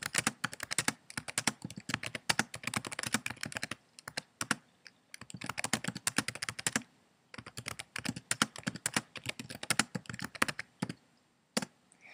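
Typing on a computer keyboard: a fast, steady run of keystroke clicks with a few brief pauses, one about four seconds in and another about seven seconds in.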